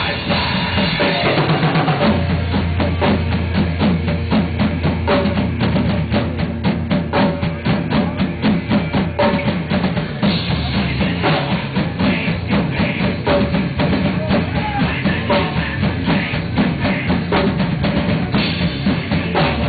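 Heavy metal band playing live: electric guitars and bass through amplifiers over a drum kit beating fast, even bass-drum and snare strokes. A low bass note is held for several seconds early on.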